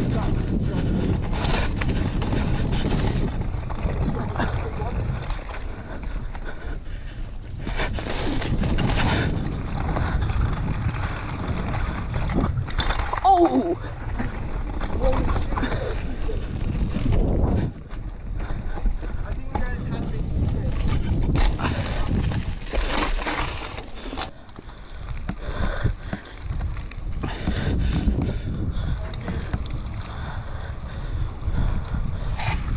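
Wind buffeting the helmet or bar-mounted action camera's microphone while a mountain bike descends a dirt trail at speed, with the tyres rumbling over the ground. The rush surges and drops as the speed changes.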